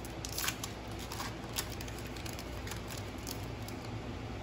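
Foil wrapper of a Panini Select basketball card pack being torn open and handled, giving scattered crinkling crackles and a few sharp ticks over a low steady hum.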